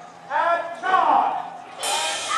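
A voice calling out in two drawn-out phrases, then a sudden loud burst of sound near the end.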